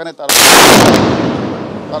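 A crude homemade bomb (a 'cocktail') explodes close by. It is a single sharp, very loud bang about a quarter second in, ringing out and fading over the next second and a half.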